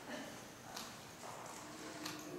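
A few faint knocks, stage props being handled and set down on the floor.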